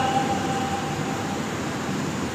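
Steady rushing noise from a pedestal fan running near the microphone, heard in a pause between sentences. A faint ringing tone left by the sound system fades out in the first second and a half.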